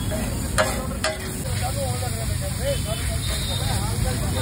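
Metal spatula clinking and scraping on a large flat iron griddle while chopped tomato-onion masala sizzles, with two sharp clinks in the first second or so.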